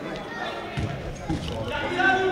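Live court sound of a futsal match in a sports hall: the ball being kicked and bouncing on the wooden floor, with players' voices calling, all carried by the hall's echo.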